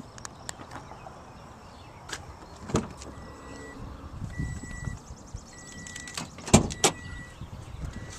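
The open driver's door of a 2013 Scion FR-S, with its warning chime beeping four times, slow and evenly spaced. Latch clicks come before the beeps, and two loud sharp clicks near the end fit the hood release being pulled.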